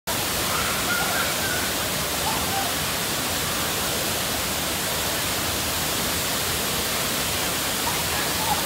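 Waterfall plunging down a rock face into its pool: a steady, even rush of falling water.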